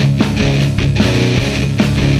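Heavy stoner rock music played by a full band: fuzz-distorted electric guitars and bass held under steady drum hits.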